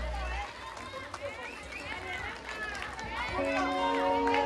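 A band's last low sustained note cuts off about half a second in, leaving a crowd of voices calling out and chattering over the open-air PA. Near the end a steady held instrument note comes in.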